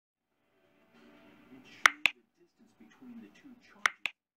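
Mouse-click sound effects for a subscribe button, two quick double clicks about two seconds apart, over a faint voice.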